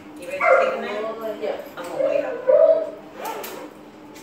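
A beagle whining and yipping in several short, pitched calls.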